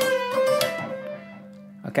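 Electric guitar playing a short single-note phrase high on the neck: a note on the B string followed by a quick bend and release a fret lower, the notes ringing and fading out about a second and a half in.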